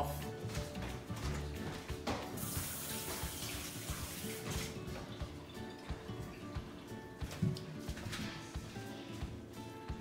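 Kitchen tap running for about two seconds, starting a couple of seconds in, over quiet background music.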